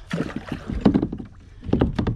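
Kayak paddle dipping and splashing in the water, three strokes about a second apart.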